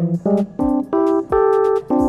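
Lounge Lizard electric piano played as a run of about six short chords, climbing in pitch. Each note sounds doubled because the MIDI keyboard is still not selected to play through AutoTonic, so Logic gets the notes twice.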